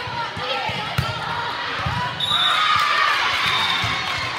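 Volleyball rally in a gym: a sharp smack of the ball about a second in, then players and spectators shouting from about two seconds in, with a short high whistle blast from the referee as the point ends.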